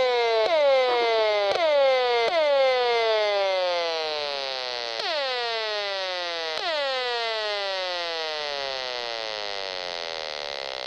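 Audio output of a Gigahertz Solutions HF35C RF meter held up to a smart electricity meter: a string of sudden tones, each sliding down in pitch as it fades, restarting at irregular intervals, several close together early on and then more spaced out. The tones are the meter's rendering of the smart meter's radio transmission bursts, which are described as going off constantly.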